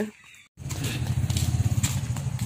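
A steady low engine rumble with a fast flutter, starting suddenly about half a second in.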